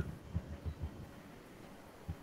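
Four or five soft, low thumps in the first second, then only faint background hiss.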